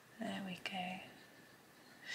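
A woman's voice making two short, soft untranscribed syllables in the first second, with a faint click between them; then quiet room tone.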